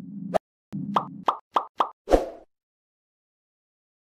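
Logo sting sound effects: a low steady hum cut off by a sharp click, then four quick plops in a row and a final louder hit.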